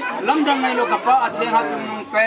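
Speech only: a man talking, with other voices chattering.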